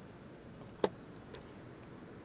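Spring-loaded plastic cover on a trailer-hitch wiring outlet snapping shut with one sharp click a little under a second in, followed by a faint second tick.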